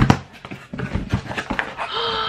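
A mail package being handled and opened: irregular rustling and crackling with small knocks, the sharpest right at the start.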